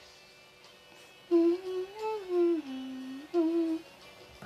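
A woman humming a short melody into a studio microphone as a mic test: a few held notes that rise, dip lower and come back up, starting about a second in and stopping just before the end.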